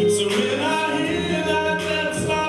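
A small group of men's and women's voices singing a worship song together, holding long notes.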